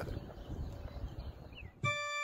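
Low outdoor background noise with a faint rumble, then a sustained organ chord starts suddenly near the end: the opening of the hymn accompaniment.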